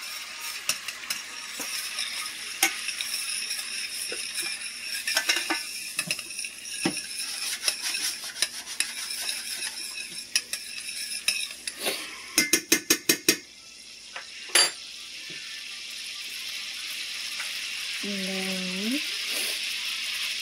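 Minced garlic sizzling in melted butter and olive oil in a frying pan, with a utensil tapping and scraping the pan as it is stirred. A little past halfway there is a quick run of about five taps.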